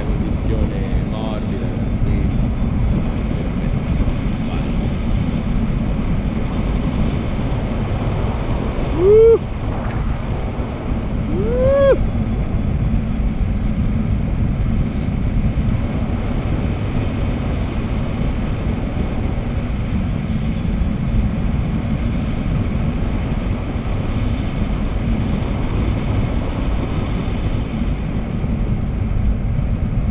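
Wind rushing over the camera microphone in paraglider flight: a steady, deep buffeting rumble. It is broken about a third of the way in by two short tones, about three seconds apart, each rising and then falling in pitch.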